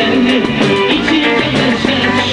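Band music led by guitar, with a steady beat.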